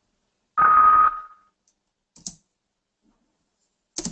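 A short electronic beep from the assessment software, a noisy burst with one steady tone that fades out within about a second. Two brief clicks follow, one about two seconds in and one near the end.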